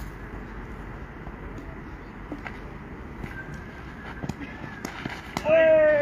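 Open-air background with a few faint knocks on the cricket field, then near the end a man's loud, drawn-out shout that falls slightly in pitch as the ball is played.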